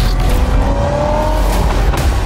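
Audi RS6 Avant (C8) twin-turbo V8 accelerating, its pitch rising for about a second and a half over a deep rumble.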